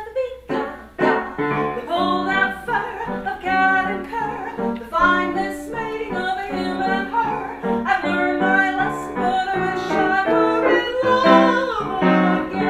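A woman singing with instrumental accompaniment in a live song performance.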